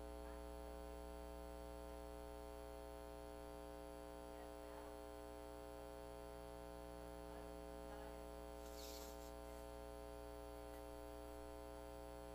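Quiet, steady electrical mains hum and buzz in the sound system's recording, with a short hiss about nine seconds in.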